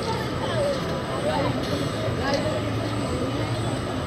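Steady low mechanical hum of a pendulum thrill ride's drive running as the ride starts to swing, with people's voices and chatter over it.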